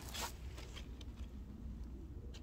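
Faint rustling and brushing, with a short scrape about a quarter-second in and a few light ticks, over a low steady rumble.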